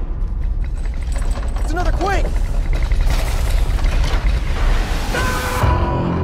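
Film sound design of an earthquake hitting: a loud, deep rumble that starts suddenly and keeps up, with rattling noise swelling through the middle and a short pitched sound rising and falling twice about two seconds in. Held musical tones enter near the end.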